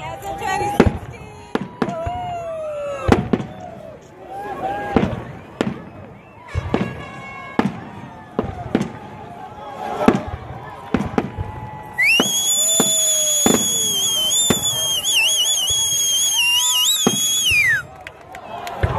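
Fireworks bursting overhead: repeated sharp bangs spread through, with crowd voices between them. For about the last six seconds a loud, shrill whistle holds, wavering, then falls in pitch as it cuts off.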